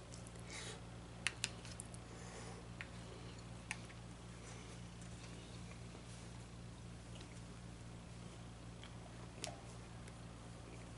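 A person chewing a mouthful of food, faint and wet, with a few sharp clicks in the first four seconds and one more near the end, over a steady low electrical hum.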